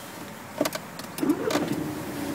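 A 2012 Volkswagen Passat TDI diesel is started with the push-button starter: a click and a brief crank, then the engine catches and settles into a steady idle hum, with another click about a second and a half in.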